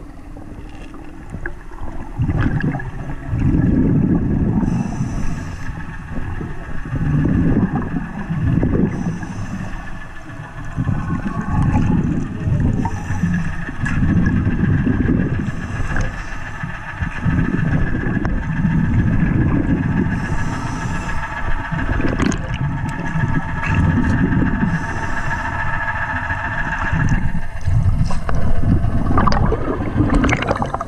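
Water surging and gurgling against an underwater camera in low waves every one to two seconds, over a steady high whine carried through the water.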